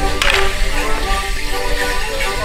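Morris musicians playing a folk dance tune for the dancers, with a sharp clatter about a quarter second in.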